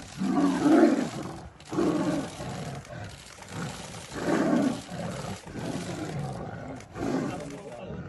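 Tigers roaring at each other in a territorial fight, in about four loud outbursts a few seconds apart, the loudest about a second in.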